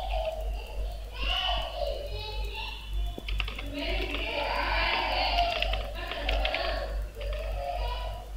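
Computer keyboard being typed on in short runs of key clicks, heaviest in the middle of the stretch, over a steady low hum.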